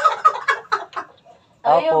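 Women laughing loudly in a rapid, cackling run of short bursts that dies away about a second in. A woman starts talking near the end.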